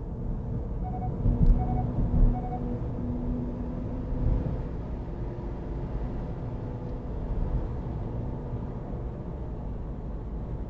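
Car cabin noise while driving in traffic: a steady low road and engine rumble, with a few louder thumps and three short beeps in the first few seconds.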